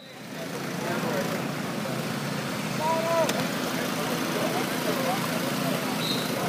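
Outdoor football-practice ambience: distant shouts and voices of players and coaches over a steady rumble of open-air noise, with one louder call about three seconds in.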